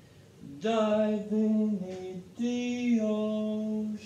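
A man singing slowly in a deep, drawn-out voice, as if in slow motion: three long held notes, the first starting about half a second in and the last held to the end.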